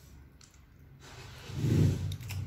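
A woman chewing a mouthful of rice, quiet at first with a few faint mouth clicks, then a low closed-mouth 'mmm' hum about one and a half seconds in.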